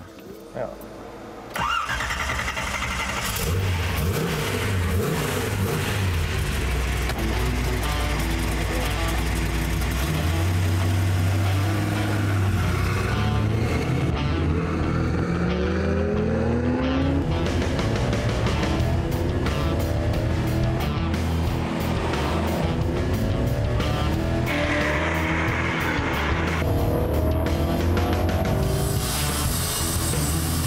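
1965 Chevrolet Corvette's supercharged V8 starting on the key about a second and a half in, then running loudly with repeated rising revs. Music comes in over it near the end.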